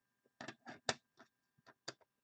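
Hard plastic PSA card slabs clicking against each other as one is set down on a stack: a quick run of seven or eight sharp clacks over about a second and a half, the last one among the loudest.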